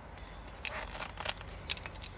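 Hand-held wire stripper/crimper closing on thin automotive wire and a butt connector: a sharp snap about two-thirds of a second in, then several lighter clicks.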